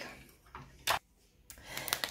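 A few faint clicks and one sharp clack just before a second in, from objects being handled.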